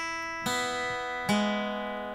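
Acoustic guitar with an E chord held, picked one string at a time down from the high E string through the B to the G string, each note left ringing. A new note sounds about half a second in and a lower one just past a second in.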